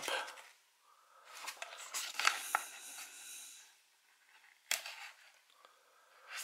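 A cardboard sleeve being slid off a metal Blu-ray steelbook case: a soft papery rustle and scrape lasting a couple of seconds, then a single sharp click near the end.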